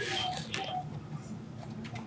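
Quiet room with faint, low voices murmuring; a voice trails off in the first half second.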